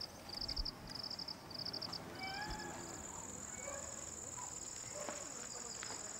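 Insects chirping: short pulsed high chirps about twice a second for the first two seconds, then a steady high-pitched insect trill takes over.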